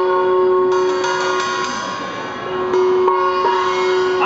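Street performer's instrumental music: a few long held notes that step to a new pitch several times, with a few light strikes in the first couple of seconds.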